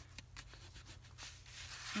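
Faint rubbing of hands pressing and smoothing glued paper tags flat onto a parchment journal page, with a few soft taps, over a low steady hum.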